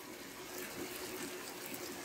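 Shell pasta in taco sauce simmering in a skillet on a gas burner: a steady, quiet bubbling hiss with a faint steady hum underneath.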